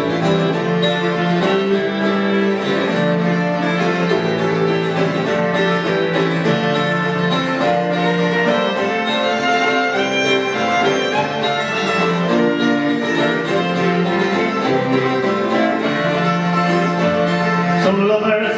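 Instrumental break of an Irish folk song played live: fiddle carrying the tune over strummed acoustic guitar and bowed cello.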